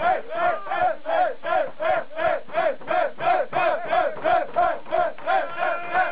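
A group of people chanting one short syllable over and over, about three times a second, egging on someone who is downing a beer in one go.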